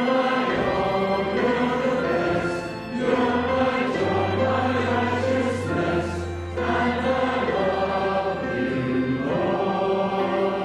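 Congregation singing a hymn together with piano accompaniment, in sustained phrases with brief breaks between lines.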